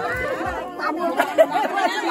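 Several people talking over one another, their voices overlapping in close, steady chatter.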